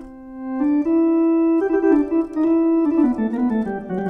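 Lowrey Palladium electronic organ playing a short melody of held notes on its flute voices, all of them drawn together, which gives each note a stack of steady tones. The sound swells in over the first second and the melody steps lower near the end.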